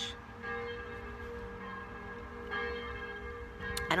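Church bells ringing, several tones of different pitch sounding together and ringing on, with fresh strikes about half a second in and again about two and a half seconds in.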